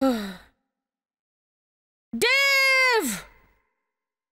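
A woman's wordless vocal exclamations of exasperated dismay. First comes a short falling groan. About two seconds in comes a long, high 'oh' held for most of a second that then drops sharply in pitch.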